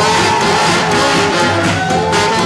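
Live swing jazz band playing, horns over a rhythm section of piano, upright bass and drums.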